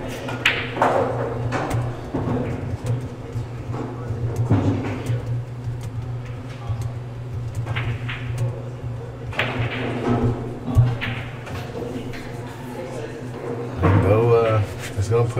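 Pool-hall background chatter over a steady low hum, with one sharp click about eleven seconds in: a cue tip striking the cue ball on a pool table.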